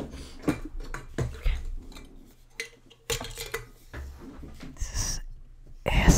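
Plastic LEGO pieces handled right at a microphone, giving scattered small clicks and clacks.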